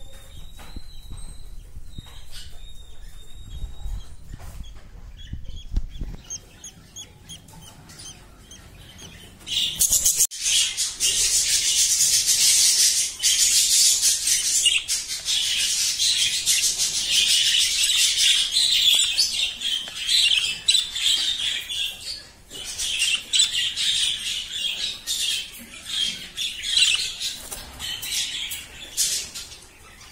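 Hagoromo budgerigars chirping: a few faint calls at first, then, about a third of the way in, a loud, dense, unbroken chatter that carries on with one brief dip past the three-quarter mark.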